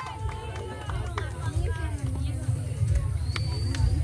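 Crowd of people chattering, with faint scattered voices and calls and a few short sharp ticks over a low rumble.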